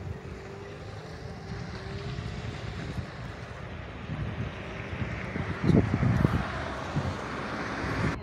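Wind buffeting the phone's microphone over a steady rush of outdoor traffic noise. The gusts are strongest about six seconds in, and the rush swells near the end.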